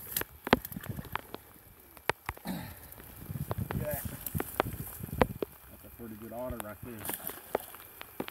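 Scattered sharp clicks and knocks and crackling dry grass as a trapped otter is hauled out of the pond edge in its trap, with brief low muttering.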